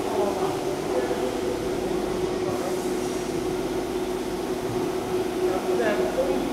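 A SINAJET vertical inkjet cutter plotter running, with a steady servo-motor whine as its head carriage works and the paper is fed through.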